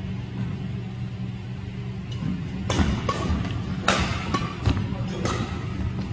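Badminton rackets striking a shuttlecock in a doubles rally: a quick series of sharp cracks beginning about two and a half seconds in, over a steady low hum.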